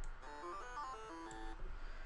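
NanoStudio's Eden software synthesizer, on a patch of harp and 'Vox Ah' waveforms, playing a quick run of short notes in the low octaves, the last one held a little longer.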